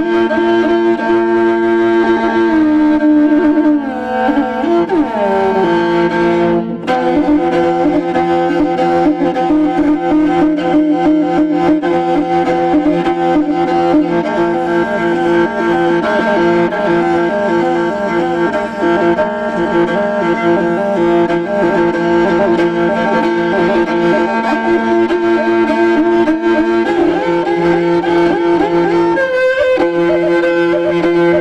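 Morin khuur (Mongolian horsehead fiddle) played solo with the bow, in long held notes over sustained lower notes. The pitch slides between about three and six seconds in, and there is a brief break about seven seconds in.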